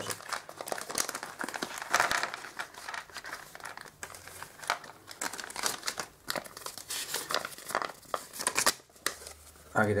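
A small plastic parts bag crinkling and rustling as it is opened and emptied by hand, in irregular bursts, loudest about two seconds in.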